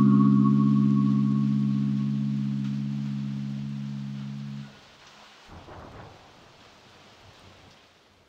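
Close of a lo-fi hip-hop instrumental: a held chord fades slowly and stops about halfway through. A faint rain-like hiss with a soft low rumble is left, and it fades out at the end.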